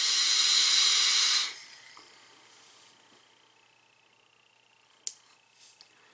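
A hit on a Freemax Scylla sub-ohm vape tank: a loud airy hiss that starts suddenly, lasts about a second and a half, then fades. A faint click comes near the end.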